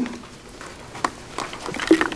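Quiet room tone with a sharp click about a second in and a few fainter ticks and rustles from a plastic water bottle being handled.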